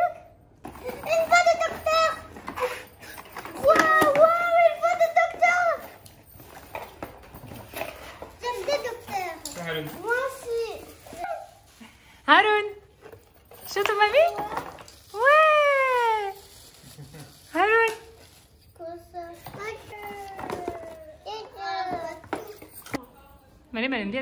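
Young children's voices: high-pitched talking and calling out, with several drawn-out cries that rise and fall in pitch in the middle of the stretch.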